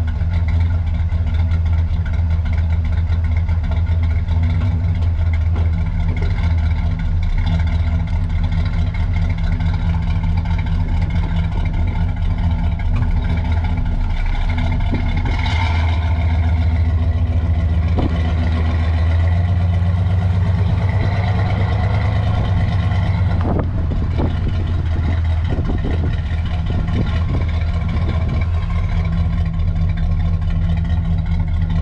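1964 Pontiac GTO Tri-Power's 389 V8 exhaust, heard close to the tailpipe, running at a steady low burble as the car creeps along at low speed. There is a brief change in the note about halfway through.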